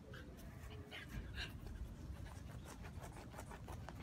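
Shiba Inu panting and sniffing with short breaths, then scratching at loose sandy soil with its paws as it digs.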